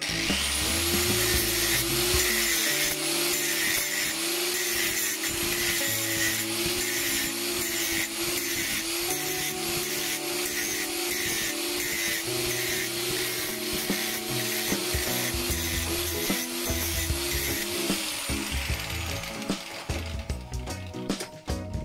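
Angle grinder spinning up and grinding grooves across the face of a small metal disc clamped in a vise, a steady harsh grinding with a wavering motor whine. It spins down near the end.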